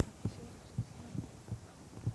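A sharp click, then a string of soft, dull low thumps, about two a second and unevenly spaced.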